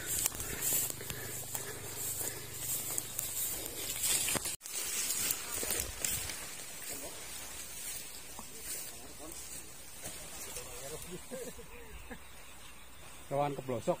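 Steady hissing, rustling outdoor noise on a brushy hillside trail, with faint distant voices now and then and a short burst of speech near the end.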